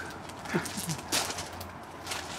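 Brief falling vocal sounds from a person, trailing off a laugh, then a sharp click just after a second in, with a few fainter clicks over a low steady hum.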